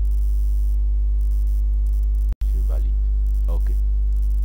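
Steady, loud low electrical mains hum on the recording, with a row of even overtones above it. It drops out for an instant a little past halfway, where the recording is cut, then carries on.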